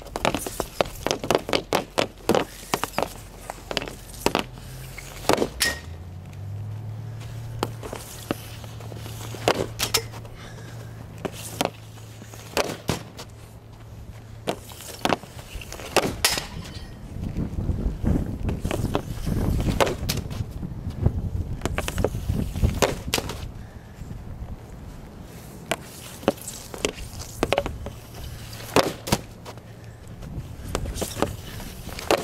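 Hockey stick and pucks on pavement: a quick run of sharp clacks in the first few seconds, then scattered single cracks of shots. In the middle there is a stretch of low rumbling.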